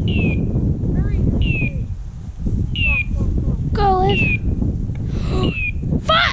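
Hunting dog's electronic beeper collar sounding five short, identical falling beeps, evenly spaced about every second and a half, over wind noise on the microphone. A brief wavering cry comes about four seconds in.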